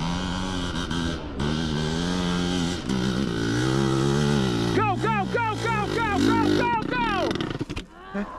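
Dirt bike engines running steadily. From about five seconds in, an engine revs in quick repeated blips as the bike claws up a steep, loose hill climb, then the sound drops away just before the end as the attempt fails short of the top.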